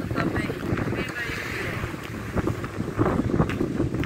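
Wind buffeting the microphone outdoors, a rough steady rush with scattered brief knocks, over faint distant voices.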